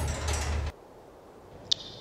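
Mechanical clicking and rattling over a low hum. It cuts off abruptly under a second in, leaving faint room tone with one short high blip near the end.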